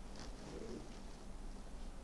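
Quiet studio room tone with a steady low electrical hum, a faint short click near the start and a brief soft low murmur about half a second in.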